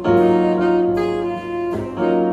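Tenor saxophone playing a jazz melody line of held notes over piano accompaniment.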